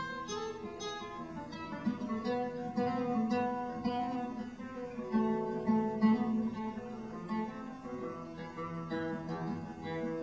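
Solo acoustic guitar playing an instrumental passage of a folk song, a steady run of plucked and strummed notes with no singing.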